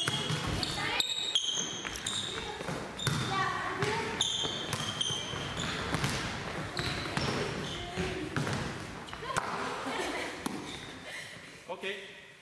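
Volleyballs being played in a sports hall: many sharp hand contacts and bounces on the hall floor, ringing in the large room, with girls' voices calling between them. The sound tails off near the end.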